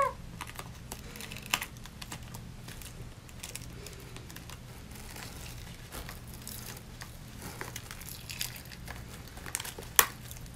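Glued-on rhinestones clicking and crinkling against each other as a rhinestone face covering is peeled off skin by hand, in small irregular clicks with a slightly louder one about a second and a half in.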